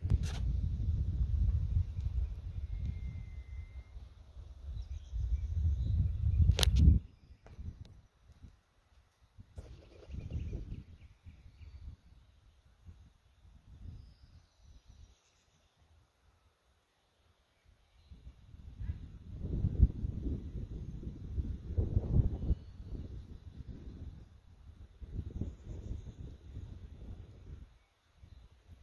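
Wind buffeting the microphone in gusts, coming and going, with a sharp click about seven seconds in.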